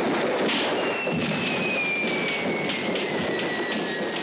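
Fireworks crackling and popping in a dense, continuous din, with a long whistle that falls slowly in pitch from about a second in.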